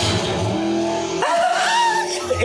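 Car-chase sound from a film soundtrack: a car engine revving, with a pitched sound rising over the second half.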